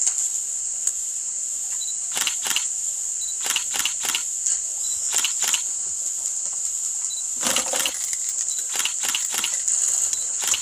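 Trigger spray bottle squirting disinfectant in short bursts, often in quick pairs, with a longer spray about three quarters of the way through, as a lectern is sanitised. A steady high hiss runs underneath.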